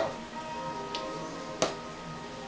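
Background music with steady held notes. A sharp click about one and a half seconds in, with a fainter tick shortly before it.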